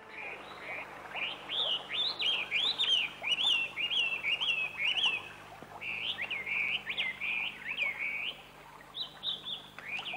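Small songbirds chirping, a quick run of short, bending chirps repeated many times, with a brief lull near the end before a few more.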